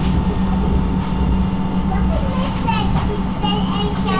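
Steady low hum of a standing tram heard from inside the car, with a thin steady whine above it, under scattered chatter and high children's voices.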